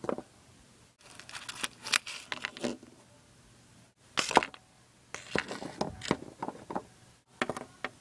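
Paper crinkling and rustling in several short bursts as a small paper mailing package is opened by hand and a tissue-paper bundle is pulled out and unwrapped.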